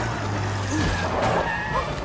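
A large vintage car's engine running steadily as the car rolls forward, easing off near the end, with voices over it.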